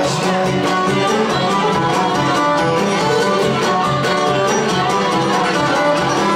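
Live Cretan folk music, instrumental: a bowed Cretan lyra plays the melody over strummed laouto accompaniment keeping a steady rhythm.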